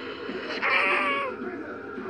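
A single meow, loud and drawn out for under a second, starting about half a second in.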